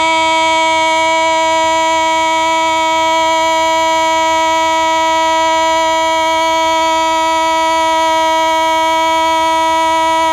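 A singer holding one long, unwavering note of Hmong kwv txhiaj sung poetry, reached by a slide upward just before and sustained at an even loudness without vibrato.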